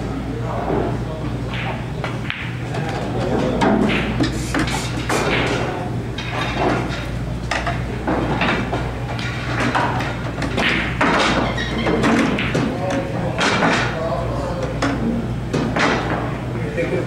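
Pool hall background: indistinct voices talking and repeated sharp clacks of pool balls striking one another, over a steady low hum.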